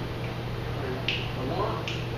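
Finger snaps at a steady, slow pulse, a little more than one a second, setting the tempo before the band's count-in.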